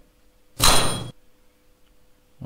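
Simulated tuning-fork sound from a virtual physics lab: a single metallic clang with a bright ring about half a second in, lasting about half a second. Under it is a faint steady hum from the 320 Hz fork.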